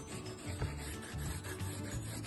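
Pencil scratching on drawing paper in repeated short strokes, over background music with low notes.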